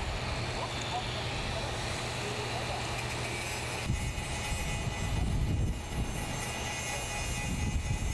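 Heavy construction machinery rumbling low and steady on a building site. About four seconds in, the sound cuts to a handheld angle grinder running on a pipe, a steady high whine over the rumble.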